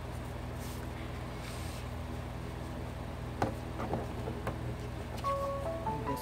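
Paper cards and tags being handled, with a few light clicks and taps, over a steady low hum. Near the end a short electronic melody of stepped notes begins: a phone alert for an incoming message.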